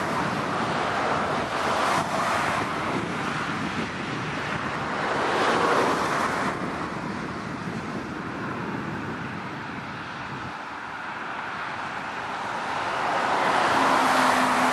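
Rushing outdoor noise that swells and fades over several seconds, loudest about six seconds in and rising again near the end.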